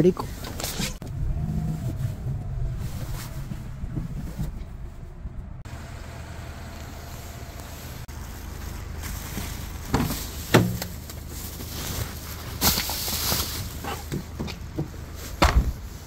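A parked car's engine left idling steadily to keep it warm, heard as a low hum. A few sharp knocks and a short rustle come later on.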